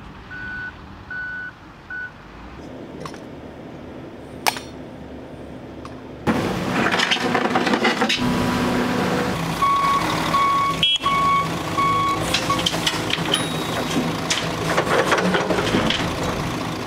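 Heavy construction machinery working, with a reversing alarm beeping about four times in the first two seconds. About six seconds in, louder diesel machinery takes over, and a second, lower-pitched reversing alarm beeps about five times. A couple of sharp knocks stand out.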